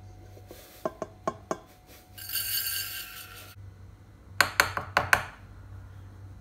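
Metal measuring cup clinking against a stainless steel mixing bowl: a few light clinks about a second in, then a louder quick run of clinks near the end. In between, a steady hiss lasts about a second and a half.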